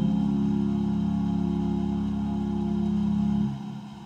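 Instrumental church music: a held chord of steady tones that ends about three and a half seconds in.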